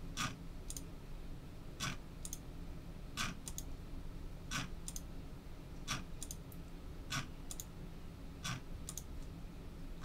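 Faint computer mouse clicks repeating about every second and a half, each a sharp click followed by a fainter one, as a web page's randomize button is clicked again and again.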